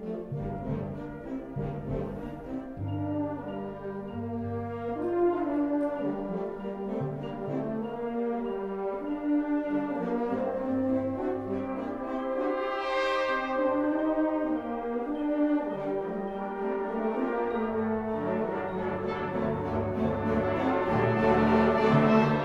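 Concert band of brass, woodwinds and percussion playing live. Sustained brass chords, with French horns prominent, sit over low bass notes, swelling brightly around the middle and growing gradually louder toward the end.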